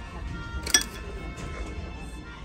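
Background music at a dining table, with one sharp clink of metal cutlery against a china plate a little under a second in.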